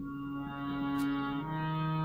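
Harmonium playing the notes Sa and Re softly over a steady drone, with the note changing about one and a half seconds in, for a singer to match in a slow-tempo alankar exercise.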